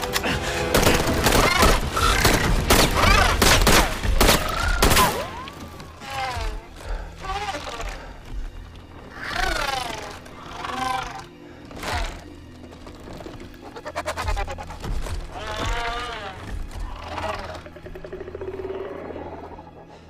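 Rapid bursts of M16 rifle fire over an orchestral film score for about the first five seconds. The shots then stop, and the score carries on with low held notes under a series of warbling, gliding creature calls.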